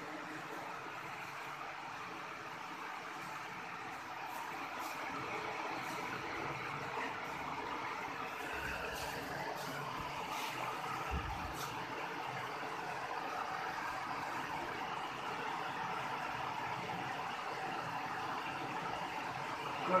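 Steady, fairly faint background noise without words, a dull hiss that grows a little louder after a few seconds, with a few faint clicks.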